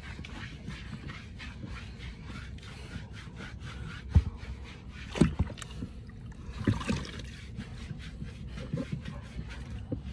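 Soapy water sloshing in a plastic tub and wet fur being rubbed during a dog's bath, with small splashes and a few knocks against the tub, the sharpest about four seconds in.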